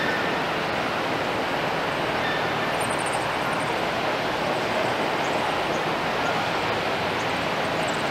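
Steady outdoor background noise, an even rushing hiss with no distinct source, with a few faint high chirps about three seconds in.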